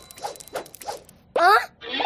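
Cartoon baby character sniffling a few times in quick short rasps, then letting out a loud whimper that rises in pitch, as he starts to cry.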